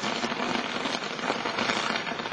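Ladder-shaped firework burning as it climbs into the sky: a dense, steady crackle and hiss of the burning pyrotechnic composition.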